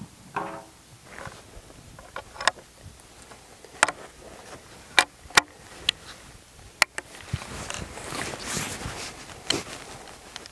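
A series of sharp metallic clicks and clacks from a Springfield Trapdoor Model 1884 rifle's breech being worked by hand for a reload: the thumb lever raising the trapdoor, the spent .45-70 case ejecting, a fresh cartridge going in, the door closing and the hammer being cocked. There is a soft rustle near the end.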